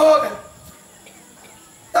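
A man's amplified voice breaks off about half a second in. A quiet pause follows, with faint background hiss and a steady high-pitched whine.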